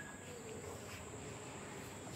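Crickets chirring outdoors, a faint, steady high-pitched drone.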